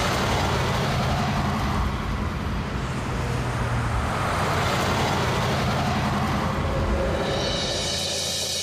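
Busy city road traffic: a steady wash of engine rumble and tyre hiss from many vehicles.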